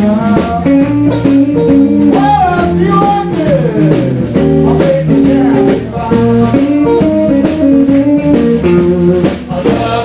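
Live blues trio of electric guitar, electric bass and drum kit playing an instrumental passage, the guitar taking lead lines with bent notes over a steady beat.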